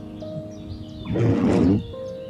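Background music with long held notes. About a second in, a loud rushing burst lasting under a second cuts across it.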